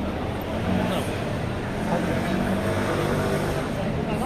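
Busy city street ambience: passersby talking close by over a steady hum of road traffic.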